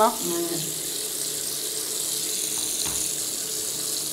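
Bathroom tap running steadily into a washbasin while a wash mitt is wetted under the stream.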